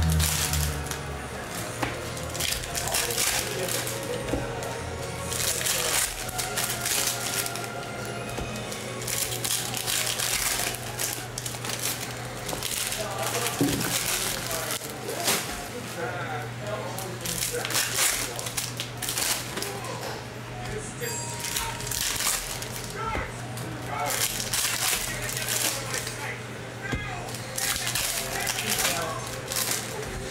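Foil trading-card pack wrappers crinkling and tearing as packs are ripped open, with cards clicking as they are handled, over a steady low hum and background music.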